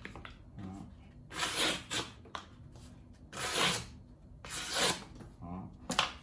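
A sharpened replica Japanese katana blade slicing through a thin cardboard cake-box lid: three short cuts, each about half a second long.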